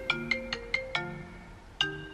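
Phone alarm ringtone going off for a 5 a.m. wake-up: a short melody of quick notes that stops briefly near the middle and then starts over.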